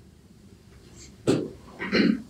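Two short, sharp vocal bursts a little over half a second apart, the first about a second and a half in, over quiet room tone.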